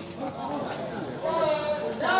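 People talking, with a few sharp knocks in between; the voices grow louder in the second half.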